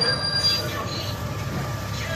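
Hydraulic rear loading ramps of a lowbed semi-trailer being raised, over a steady low mechanical hum. A brief high-pitched squeal comes about half a second in.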